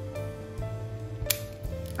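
Background music with steady held notes, and a single sharp click about two-thirds of the way in.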